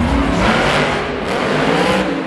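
Monster Mutt Dalmatian monster truck's supercharged V8 running at full throttle as the truck drives up a dirt ramp and launches into the air. The engine note climbs, with a loud rush of noise about half a second in.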